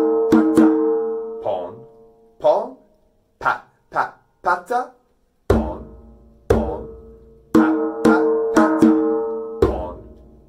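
Djembe played by hand in the "pon pon pat pat pata" rhythm: ringing strokes followed by quicker ones, in two phrases. Short spoken rhythm syllables fill the gap between the phrases.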